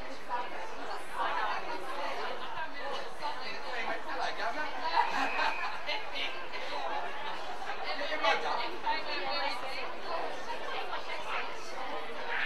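Indistinct chatter and calling of several voices around an Australian rules football ground, with no clear words, rising briefly about five seconds in.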